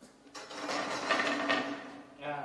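A dense rattling, clicking noise that starts about a third of a second in and lasts about a second and a half, then dies away.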